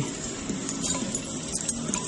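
A few faint metallic clinks of a #12 steel jack chain being handled where it hooks onto a carabiner at the weight bar.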